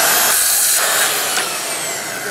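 Festool HK carpentry circular saw running and crosscutting a wooden board along its FSK guide rail; a little past halfway the trigger is let go and the motor spins down with a falling whine.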